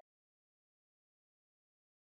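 Silence: nothing audible.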